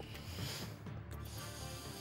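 Game-show suspense sound effect: a ratchet-like ticking, as of a spinning selector, over faint background music while a help card is chosen.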